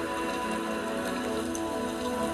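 Soft background music of sustained, held chords, with no melody standing out.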